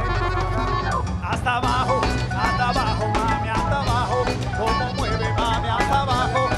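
Live cumbia band playing an instrumental passage: congas, timbales and bass keep a steady beat under a keyboard melody.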